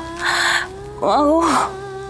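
A woman moaning as if unwell: two breathy moans, the second with a short voiced groan that rises and falls. A steady held note of background music runs underneath.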